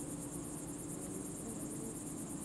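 Grassland insects, crickets or bush crickets, chirping in a continuous high-pitched trill with a rapid, even pulse, over a low steady background rumble.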